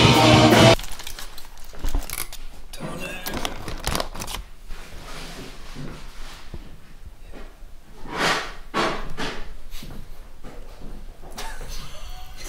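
Live band of saxophone, electric guitar, bass and drums playing loudly, cut off abruptly less than a second in. After that only quieter room sound with brief rustling and handling noises close to the microphone.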